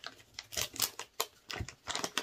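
Light, irregular clicks and crinkles of a wet wipe being pulled from its plastic packet and handled.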